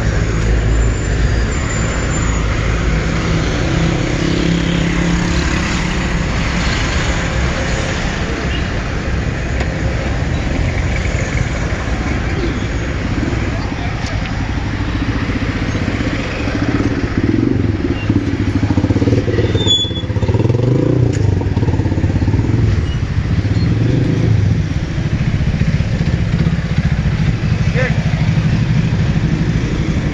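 Slow, congested city street traffic: vehicle engines running close by, with a steady low hum throughout.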